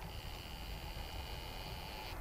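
Faint, steady high whine of a camera's zoom motor running for about two seconds as the lens zooms in, over a low rumble of wind on the microphone.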